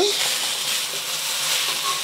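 Sliced onions sizzling in hot oil in a carbon-steel wok, a steady hiss.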